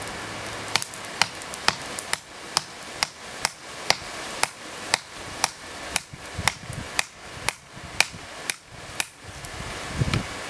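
Hand hammer striking a red-hot railroad spike held in pliers on a granite rock anvil: a steady run of sharp blows about two a second, starting about a second in.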